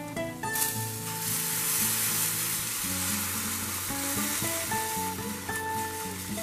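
Hot water poured into a stainless steel pan of frying onion-tomato masala, setting off a steady hissing sizzle that starts suddenly about half a second in.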